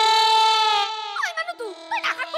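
A loud, long wailing howl, held for about a second and falling slightly, then breaking into shorter sliding cries.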